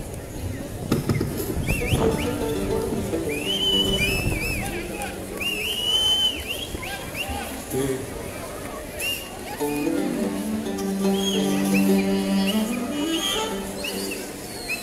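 Live amplified instruments on stage playing sustained notes and short phrases, with stacks of held tones at about 1 to 4 seconds and again from about 10 to 13 seconds. Short high gliding notes come in between.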